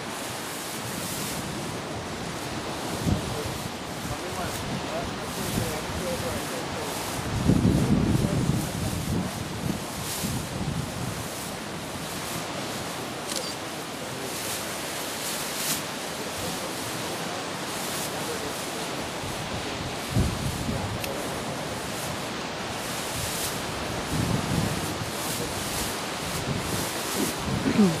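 Lake waves washing steadily against shoreline rocks in the wind, with gusts buffeting the microphone in low rumbles, the strongest about eight seconds in and lasting a couple of seconds.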